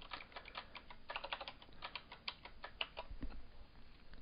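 Typing on a computer keyboard: a quick, uneven run of faint keystrokes that thins out after about three seconds.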